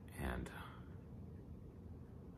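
A man's voice says one short word, "and", then pauses, leaving only faint room tone.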